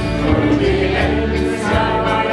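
A crowd singing a song together to backing music with a steady bass line.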